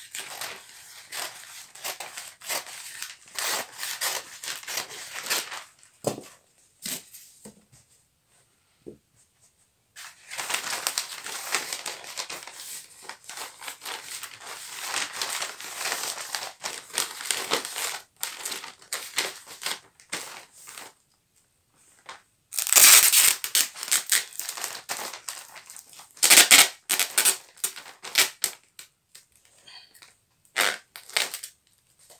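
Brown kraft wrapping paper crinkling and rustling as it is cut and folded around a parcel, in bursts with short pauses between. Two loud ripping rasps come in the last third, louder than the paper handling.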